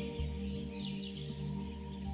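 Soft background music of steady held notes, with faint high bird chirps in the first half.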